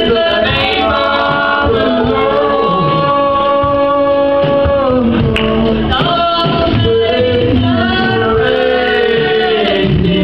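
Men's and women's voices singing a gospel song together, holding long notes and sliding between them.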